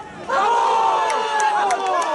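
A group of voices shouting and cheering together at a football goal, rising suddenly about a quarter second in after a brief lull.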